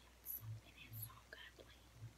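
Faint whispering: a girl's voice under her breath in a few short, breathy bursts without voice.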